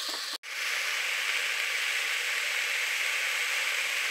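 Onions and spices frying in an aluminium pot, a steady sizzle, with a brief drop-out about half a second in.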